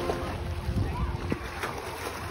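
Pool water splashing as a swimmer kicks and strokes, with wind rumbling on the microphone.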